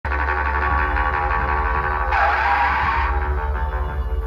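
Dhumal band music played loud, with sustained melodic lines over a heavy, steady bass. A brighter, wavering lead line comes in about two seconds in and drops out about a second later.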